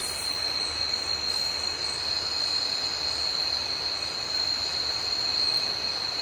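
Night-time tropical jungle insect chorus: a steady, unbroken high-pitched drone over a soft even hiss.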